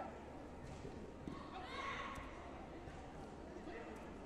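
Echoing voices in a large sports hall, loudest about two seconds in, over a steady murmur, with a sharp click just after.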